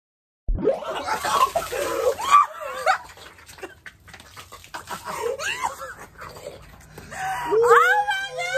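A woman shrieking and laughing as a Coke and Mentos geyser sprays her, with a fizzing hiss from the spray in the first couple of seconds. The sound starts abruptly about half a second in, and a long rising shriek comes near the end.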